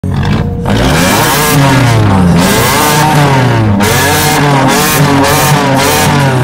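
Mini Cooper convertible's engine being revved at the exhaust, its note rising and falling in pitch several times in a row.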